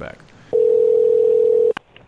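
Telephone ringback tone heard down the line as a call is placed: one steady tone for about a second, cut off by a click as the call is picked up.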